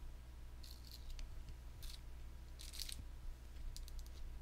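Faint eating noises: a few short crisp crunches of a person chewing a bite of Pop-Tart close to the microphone.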